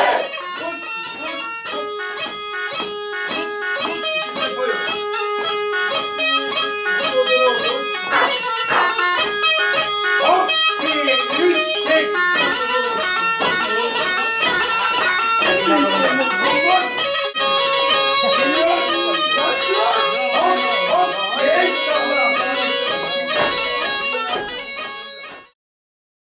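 Touloum (tulum), the Black Sea bagpipe, playing a continuous melody of quick notes. The music fades out and stops near the end.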